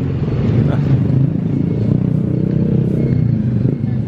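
A motor vehicle's engine running nearby: a steady low hum that eases off slightly near the end.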